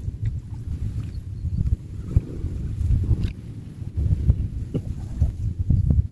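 Low, uneven rumbling of wind buffeting the microphone, mixed with soft sloshing of water as a person wades chest-deep.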